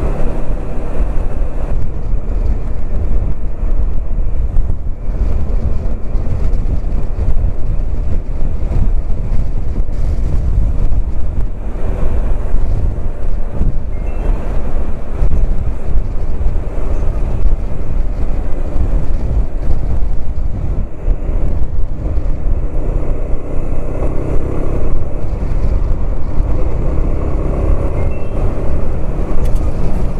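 Steady motorcycle riding noise from a bike-mounted camera: engine and road rumble with wind on the microphone, in traffic among trucks.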